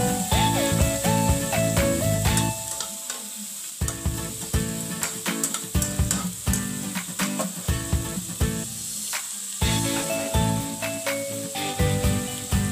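Whole shrimp sizzling as they fry in oil with onion and garlic in a ceramic-coated wok, stirred with a slotted metal spatula that clicks and scrapes against the pan. Background music with a melody plays over the first couple of seconds and again near the end.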